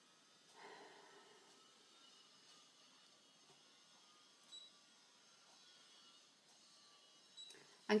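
Quiet room with a few faint, soft taps and brushing sounds from a stylus working the touchscreen of a Brother ScanNCut cutting machine. A woman's voice starts right at the end.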